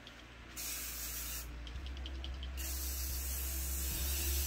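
Aerosol spray paint can spraying paint onto glossy paper: a short burst of hiss about half a second in, a pause of about a second, then a longer unbroken spray from a little past halfway.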